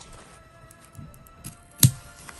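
Scissors and hands handling fabric on a cloth-covered table: a few light clicks, then one sharp knock near the end, with faint background music underneath.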